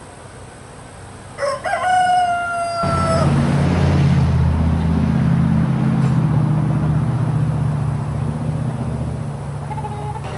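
A rooster crows once, a long call slightly falling in pitch, starting about a second and a half in. From about three seconds in comes a loud, steady low buzz of a honeybee colony clustered on the front of its hive, the sign of a colony that is swarming or getting ready to swarm.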